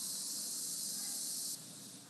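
A steady high-pitched hiss that cuts off suddenly about one and a half seconds in, then a fainter hiss.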